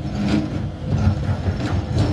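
SANY SY205C hydraulic excavator working under load, its diesel engine running with a low rumble while the bucket digs and scrapes into hard weathered rock, with irregular knocks and grinding.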